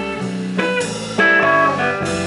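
Electric guitars playing an instrumental passage, with picked single notes standing out over the accompaniment; the sound steps up louder just over a second in.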